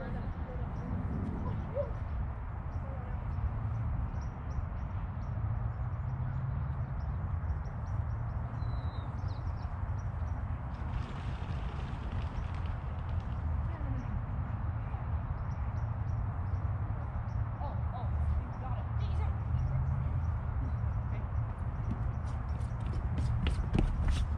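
Steady low rumble of wind buffeting an outdoor microphone, with faint scattered clicks and a brief hiss lasting about two seconds near the middle.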